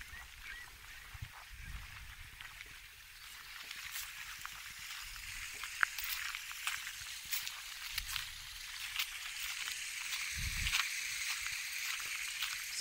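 Waterbirds calling from the bay over a steady outdoor hiss, with short crunching clicks of footsteps on gravel and pebbles.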